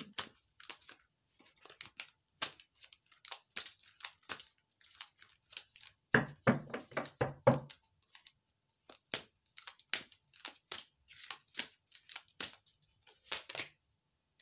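Tarot cards being shuffled by hand: a run of quick papery flicks and slides, with a louder, denser flurry about six seconds in.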